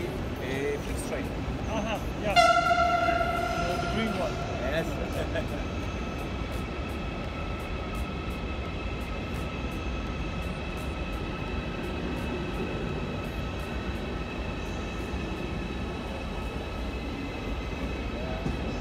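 A train horn sounds suddenly about two seconds in, a loud steady tone that fades after a few seconds, its higher notes hanging on faintly. This is over the steady background noise of a station hall.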